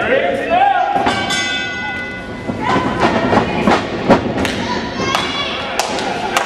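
Several scattered thuds in a wrestling ring, the loudest about four seconds in, with spectators shouting.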